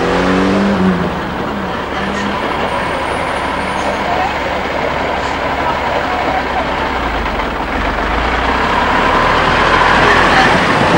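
Diesel engine of an ERF EC10 lorry running as it pulls slowly past, its rumble growing louder near the end as it comes alongside.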